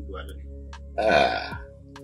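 A man belching once, a loud belch of about half a second that falls in pitch, about a second in, over soft background music.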